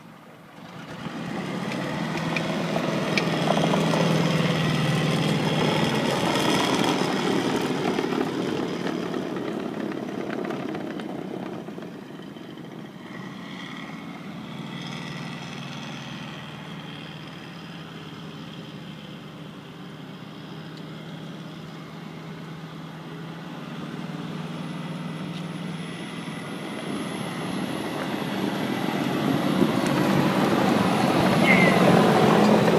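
M76 Otter tracked carrier driving past, its engine running and tracks rolling. The sound grows loud about a second in as it passes close, drops away as it drives off into the distance, and builds again toward the end as it comes back.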